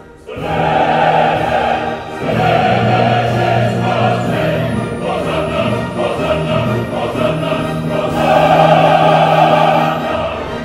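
Large opera chorus singing loudly in full, held chords. It comes in strongly just after a brief hush, with short breaks between phrases about two seconds in and again near the end.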